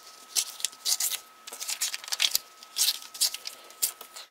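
Printer paper being torn in half along a pre-creased fold and handled on a tabletop: a run of short, crisp rips and rustles, about two a second.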